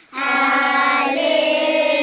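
Children singing a slow gospel song, holding long drawn-out notes after a brief pause at the start, moving to a new note about a second in.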